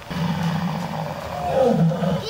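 Recorded dinosaur roar played from a life-size dinosaur model's loudspeaker: one long, low roar that swells louder near the end.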